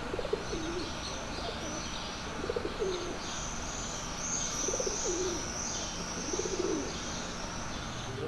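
Pigeons cooing, four short coos about two seconds apart, while small birds chirp steadily at a high pitch over a low background hum.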